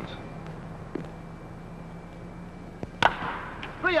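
A wooden baseball bat cracks once against a pitched ball about three seconds in, hitting a ground ball. A steady hiss and low hum from the old film soundtrack lie underneath.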